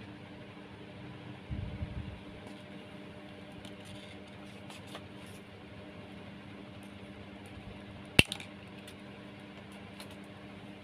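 Jute rope and a thin wire being handled on a tabletop: faint rustling, a few dull knocks about one and a half to two seconds in, and one sharp click a little after eight seconds, the loudest sound. A steady low hum runs underneath.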